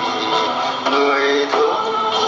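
A Vietnamese song: a voice singing long held notes over instrumental accompaniment, the melody moving to a new note about a second in and again shortly after.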